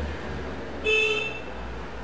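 A single short horn toot a little under a second in, over a low steady hum.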